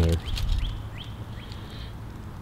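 A bird chirping: a few short, quick upward-sweeping chirps, then a thin high note near the end.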